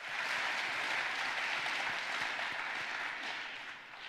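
An audience applauding: the clapping swells quickly, holds, then dies away near the end.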